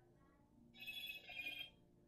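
A brief high ringing tone of several steady pitches, lasting about a second, with a wavering level.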